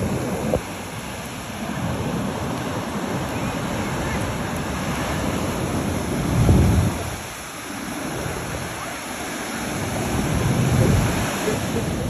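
Ocean surf breaking and washing up the beach in a steady rush, with wind rumbling on the microphone; the loudest swell comes about six and a half seconds in, and another about eleven seconds in.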